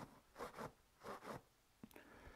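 Faint rustling of a waxed canvas pipe pouch being handled, in two soft swells, with a light click near the end.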